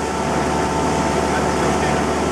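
Motorboat engine running steadily at cruising speed, a constant drone with a rush of wind and water around it.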